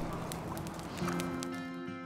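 Grass and brush fire crackling with scattered pops, under background music; sustained low music notes come in about a second in, and everything fades out near the end.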